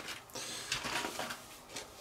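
Soft crinkling of a small plastic bag as tiny metal track links are fished out of it, with a few faint light clicks of the parts; the rustle fades after about a second.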